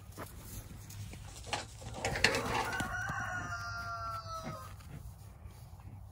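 A rooster crows once, a long, slightly falling call of about two seconds starting around three seconds in. A couple of sharp knocks come just before it.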